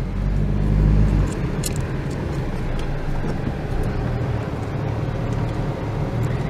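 Car engine and road noise heard from inside the cabin while driving. A louder low rumble in the first second or so settles into a steady drone.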